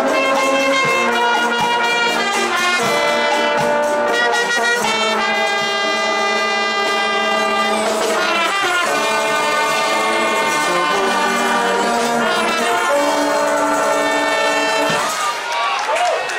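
A full marching-band brass section (trumpets, trombones and sousaphones) playing slow, sustained chords that change every few seconds. The music breaks off near the end.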